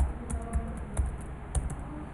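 Computer keyboard being typed on: a run of quick, irregularly spaced key clicks as a command is entered.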